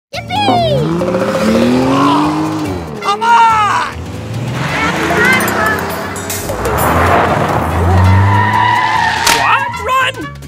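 Dubbed cartoon-style sound effects of a racing car, engine revving and tyres squealing, with many rising and falling pitch sweeps, mixed over music and wordless voices.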